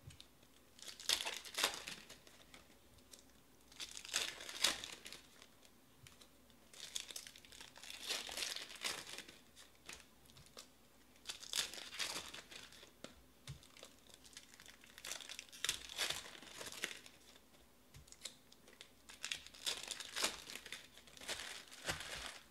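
Foil trading-card packs being torn open and crinkled by hand: about six bursts of tearing and crinkling, one every three to four seconds.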